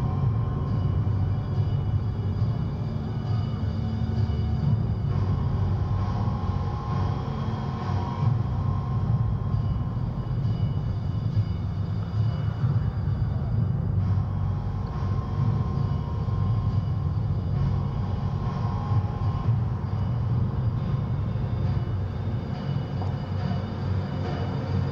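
Steady low rumble of outdoor ambience picked up by a walking camera's microphone, with faint thin tones that come and go.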